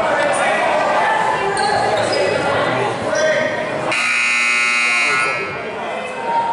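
Voices in a large gym and a basketball bouncing, then about four seconds in the scoreboard horn sounds a harsh, steady buzz for just over a second and cuts off suddenly.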